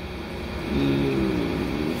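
A man's drawn-out hesitation hum, starting about two-thirds of a second in, over a steady low background rumble.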